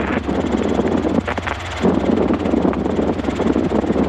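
Robinson R22 helicopter in cruise, heard inside the cockpit: the rotor and piston engine make a steady low drone under a loud, uneven rushing noise.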